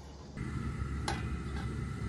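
Steady low cooking noise from a lidded wok on the stove as the chicken stew simmers, with a couple of light clicks.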